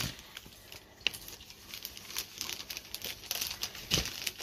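A dog sniffing at a book held close by, with soft, intermittent rustling and crinkling.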